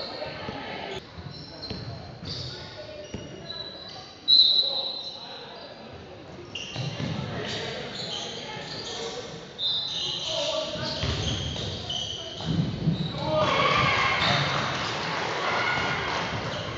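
Basketball game in a large gym: a ball dribbled on the hardwood floor, several short high squeaks of sneakers, and indistinct voices of players and onlookers, all echoing in the hall.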